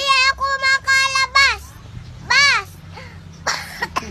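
A young girl singing in a high voice: a run of short notes, then one longer note that rises and falls. A short noisy burst follows near the end.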